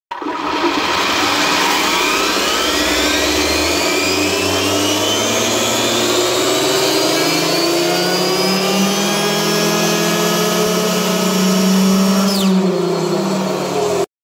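Arrma Limitless RC car running on a roller dyno: the Castle 2028 800kV brushless motor, drivetrain and tyres on the rollers whine loudly, several tones climbing in pitch over the first several seconds as the throttle ramps up, then holding near top speed. About twelve and a half seconds in the throttle is cut and the whine drops steeply in pitch as the car coasts down.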